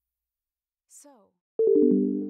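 A single spoken word, then, about a second and a half in, an electronic chime chord sounds, its notes entering one after another and holding steady: the Google Play Books logo jingle.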